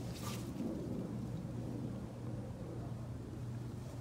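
A steady low hum with a rumble beneath it, and one brief hissing sound about a quarter of a second in.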